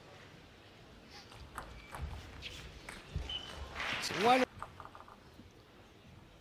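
Table tennis rally: the plastic ball clicking sharply off the bats and the table, a hit about every half second, then a few lighter bounces after the point ends.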